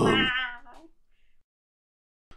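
A drawn-out, wavering meow from a cartoon cat character, fading out within the first second, followed by silence.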